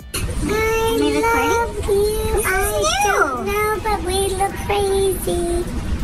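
A high-pitched, child-like voice singing in held notes, with a large swoop up and down in pitch about three seconds in.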